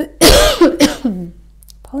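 A woman coughing, three coughs in quick succession in the first second, from a strained, hoarse voice.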